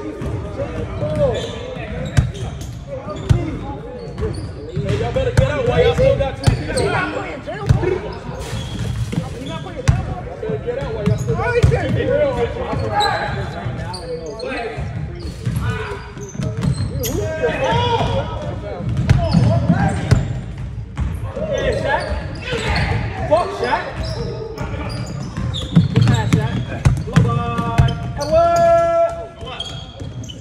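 Basketballs bouncing on a hardwood gym floor in irregular thuds during play, with players' indistinct shouts and chatter echoing around the large gym. A drawn-out high call or squeak comes near the end.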